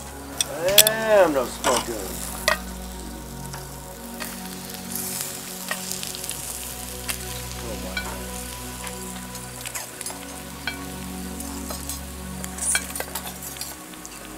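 Pork ribs sizzling over hot charcoal on a grill grate, with metal tongs clicking and scraping on the grate as the ribs are lifted off. A brief rising-and-falling tone sounds about a second in.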